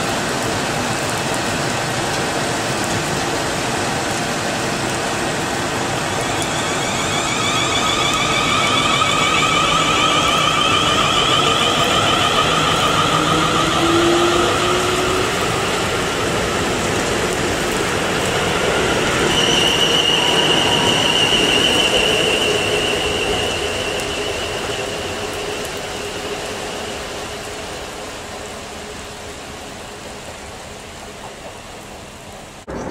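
South Western Railway electric multiple unit running along the platform and away, with high-pitched whines that come and go over its running noise. The sound fades steadily over the last several seconds as the train leaves, with rain falling.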